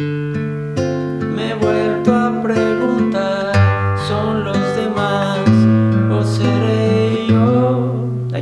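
Nylon-string classical guitar playing a chord progression. The chords are plucked with the fingers, and the bass note changes every second or two.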